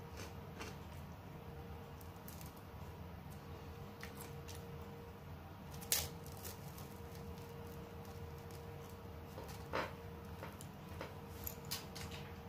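Quiet eating sounds of an ice cream cone being bitten and eaten: a few sharp short bites and mouth clicks, the loudest about six seconds in, over a steady low room hum.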